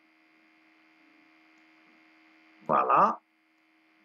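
Faint steady electrical hum with a few thin constant tones, then a short spoken word about three seconds in.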